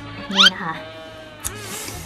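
A woman's voice with one long drawn-out syllable, over background music.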